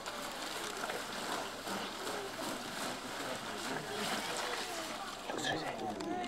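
Indistinct background chatter of several people talking at once over a steady noisy hiss, with no clear words.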